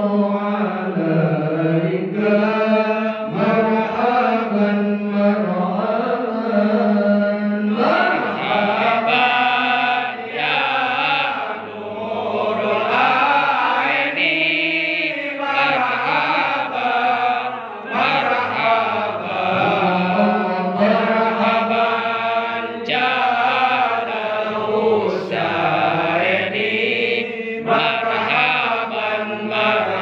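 Men chanting a marhaban devotional praise song (sholawat) in Arabic, a lead voice sung into a microphone with others joining, in long, sustained, wavering melodic lines.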